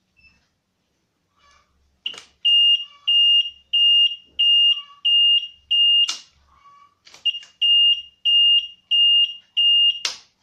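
An electronic buzzer beeping in a steady rhythm at one high pitch, about one and a half beeps a second. It sounds in two runs, about six beeps and then about five, and a sharp click comes at the start and end of each run.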